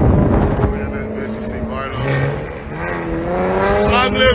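Car engines running: a loud rushing noise fades in the first second, then steady engine tones, with one engine note rising near the end as it revs up.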